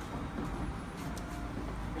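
Steady low background rumble of room noise in a training hall, with a few faint light ticks about a second in.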